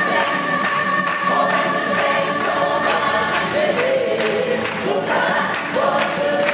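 Gospel choir singing live with band accompaniment, holding long notes over a steady beat.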